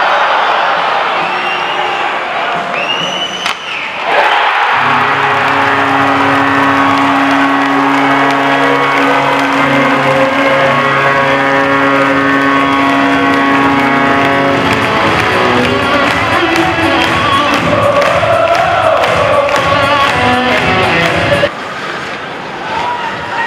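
Ice hockey arena crowd cheering a goal. About four seconds in, loud music with long held notes suddenly starts over the arena PA, and the cheering carries on under it.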